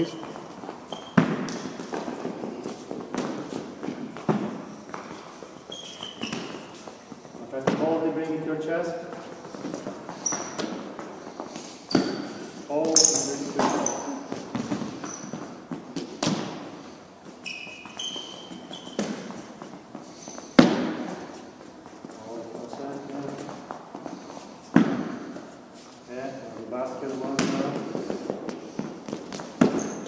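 Futsal ball impacts in a gymnasium hall: the ball thudding off hands, feet and the floor during goalkeeper drills, a single hit every few seconds, each echoing briefly in the hall, the sharpest about two-thirds of the way through.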